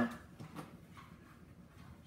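Faint handling noise: cloth rustling and a few light clicks as a clip-on mic's cable is tucked in behind a T-shirt.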